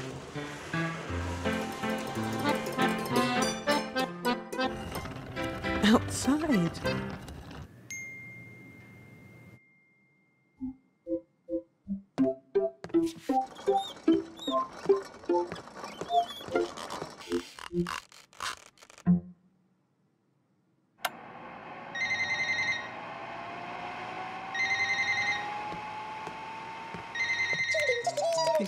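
Children's-show background music with plucked notes and pauses. Near the end, a salon hood hair dryer comes on: a steady blowing noise with a whine rising in pitch as it spins up, and short beeps repeating about every two seconds.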